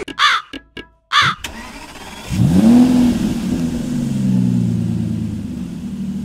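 Two short shrill cries, then a car engine heard from inside the cabin. The engine rises in pitch as the car pulls away, then runs steadily with its pitch slowly falling.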